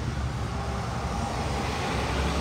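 Steady low rumble of engine and road noise heard from inside a car's cabin while it creeps along in slow traffic beside a semi-trailer truck.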